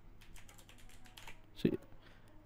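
Typing on a computer keyboard: a run of light, quick keystrokes as an email address is entered.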